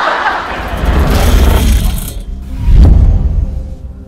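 TV promo soundtrack: a loud rushing whoosh, then a deep boom about three seconds in that fades into a low drone with held tones.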